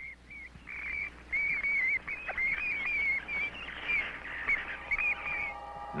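Vampire bat squeaking: a rapid string of short, high chirps, each bending up and down, stopping shortly before the end. Steady synthesizer tones come in near the end.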